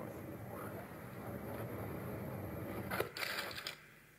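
Steady rushing wind noise picked up by a small amateur rocket's onboard camera as the rocket comes down under its parachute. About three seconds in there is a short, louder burst of noise, and then it drops away.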